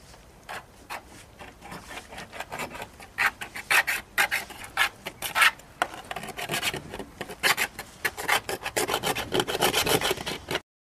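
A small hand-held object scratching and scraping at the painted side of a steel oil drum, in quick repeated strokes that start sparse and grow louder and faster from about three seconds in.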